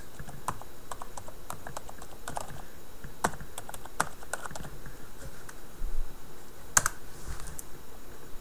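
Computer keyboard typing: irregular keystrokes entering a web address, with one louder key strike near the end.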